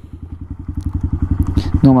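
Honda Grom's small single-cylinder four-stroke engine idling at a standstill: a steady, rapid, even low putter.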